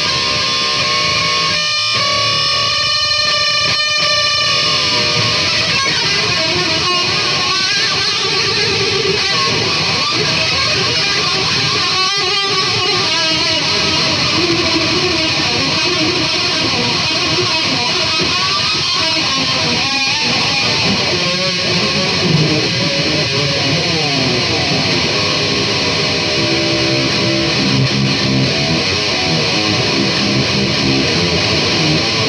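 Blue Epiphone SG electric guitar being played solo, a continuous run of notes and chords with sliding pitches in places. Its strings, the owner says, go out of tune quickly.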